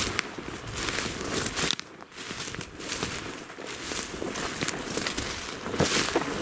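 Footsteps through low dense shrubs, the leaves swishing and rustling with each step, about two steps a second, with a short lull about two seconds in.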